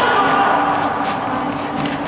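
Indoor futsal game sound in an echoing sports hall: players' voices shouting over the hall's din, with a few sharp knocks of the ball being kicked about a second in and near the end.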